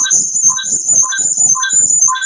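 Electronic audio feedback in a video call: a steady high whine with chirping pulses about twice a second. It comes from the echo loop the participants complain of.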